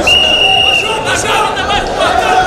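A referee's whistle blows once, a single steady high note lasting just under a second, over the shouting and chatter of a wrestling-arena crowd.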